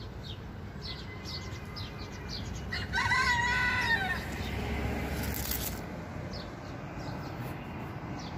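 Small birds chirping in short, repeated high notes over a steady low outdoor rumble. About three seconds in, a single call of about a second: a rooster crowing.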